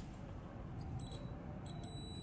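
Digital multimeter in continuity mode giving a steady, high continuity beep, starting about a second in. The beep is the sign of a short: the phone board's positive supply point reads as connected to ground.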